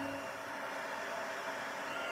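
Stampin' Up! heat tool running, a steady blowing hiss of hot air as it melts embossing powder.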